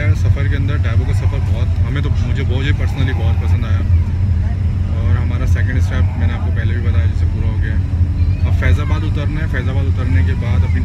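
A man talking over the steady low rumble of an intercity coach bus, heard from inside the passenger cabin.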